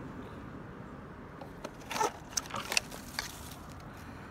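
Clear plastic tubs being handled and opened, giving a run of short sharp plastic clicks and crackles between about one and a half and three seconds in, over a steady background hiss.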